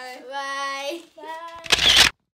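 Young girls' voices singing out long, drawn-out notes together in two phrases. Near the end comes a short, loud burst of rushing noise.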